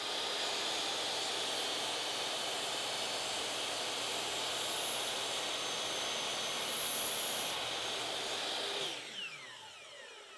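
Hitachi miter saw running with its blade lowered into a Baltic birch plywood sacrificial fence, cutting a 45-degree kerf. About nine seconds in the motor is switched off and the blade winds down with a falling whine.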